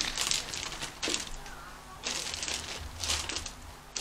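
White homemade slime with foam cubes mixed in, stretched and squished in the hands close to the microphone: soft crackling and squishing in several short bursts.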